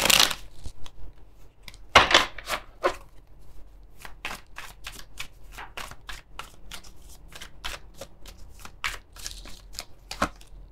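A tarot deck being shuffled by hand: a quick, irregular run of card clicks and slaps, with a louder burst about two seconds in.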